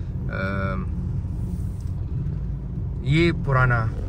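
Steady low rumble of a car moving slowly, heard from inside the cabin. A short drawn-out voice call comes about half a second in, and another voice calls out near the end.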